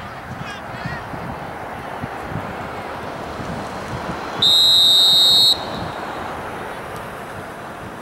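Referee's whistle: one long, shrill blast of about a second, a little past halfway through, signalling the kickoff from the centre circle. Spectators' voices and wind noise run underneath.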